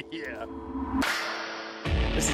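A whoosh sound effect that starts suddenly about halfway through and lasts just under a second, over a held drone, leading into guitar music at the very end.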